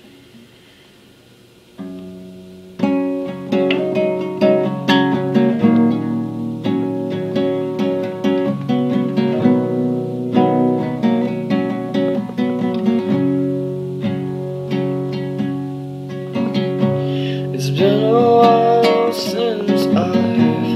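Small acoustic guitar playing a song intro: a single note about two seconds in, then a steady pattern of picked chords. Near the end a man's singing voice comes in over the guitar.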